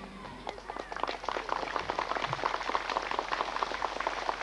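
Applause from an outdoor crowd: many separate hand claps, starting about half a second in and going on steadily.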